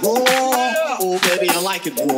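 G-house track playing in a DJ mix: pitched synth and vocal-like lines over sharp percussion hits, with no bass drum in these two seconds.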